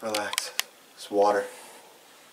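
A wounded man groaning twice in pain, about a second apart, with a few sharp clicks near the start.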